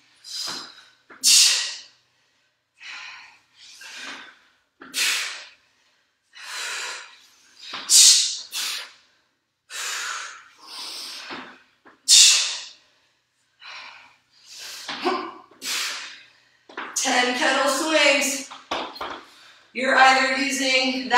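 A woman breathing hard while exercising: short, forceful breaths about once a second, out of breath partway through a round of burpees and weighted lifts.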